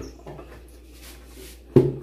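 Collapsible plastic sink trash bin being handled and pulled open: faint rustling, then a sharp click near the end.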